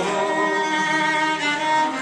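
Fiddle playing held melody notes over acoustic guitar accompaniment of an Irish folk ballad, filling the gap between sung lines.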